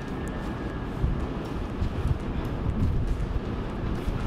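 Low, steady rumble on the open deck of a moving ferry, with wind gusting irregularly against the microphone.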